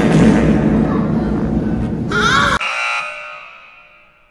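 A loud, dense noise, then about two seconds in a brief shrill cry. It is cut off by a buzzer sound effect whose tone fades away over the last second and a half.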